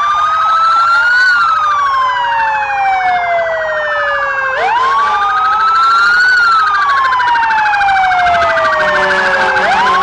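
Several emergency-vehicle sirens sounding together from the police vehicles and fire engines leading the parade. A wail sweeps up quickly and falls slowly, repeating about every five seconds, over a steady, rapidly pulsing siren tone.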